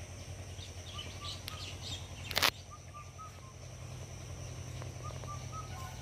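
Birds chirping in short repeated phrases over a steady low hum and a thin, steady high tone. One short, sharp noise about two and a half seconds in is the loudest sound.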